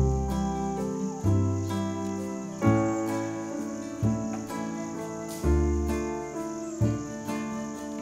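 Live acoustic ensemble music of grand piano, double bass and strings with a wind instrument, a deep note struck about every second and a half under sustained chords. A steady high chirring of insects runs underneath.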